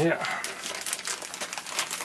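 White plastic poly mailer bag crinkling and rustling as it is handled and turned over in the hands, a dense run of crackles.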